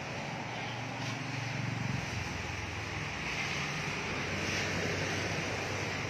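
An engine running steadily with a low hum, a little louder about one to two seconds in.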